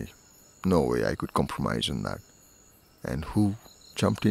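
A man speaking in two short phrases separated by pauses, with a faint, steady high-pitched tone in the background.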